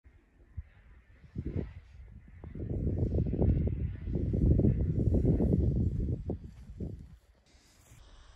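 Low rumbling buffeting on the camera's microphone with a few separate thumps early on, swelling through the middle and dying away about a second before the end.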